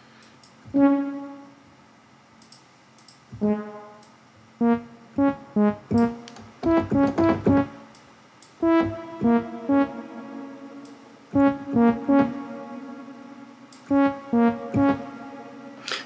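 Synthesizer phrase played through a granular delay and a tape-style echo: two single notes, then quick runs of short pitched notes, each fading off in a smeared tail. The echo is chained after the digital delay to smooth out its harsh edge.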